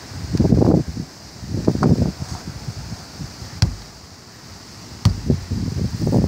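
Irregular gusts of wind noise on the microphone mixed with handling rustle, broken by a sharp knock about three and a half seconds in and another about five seconds in.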